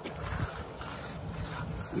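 Steel hand groover scraping along wet concrete against a wooden straightedge, a second pass to deepen a control joint, in a few soft strokes over a low rumble.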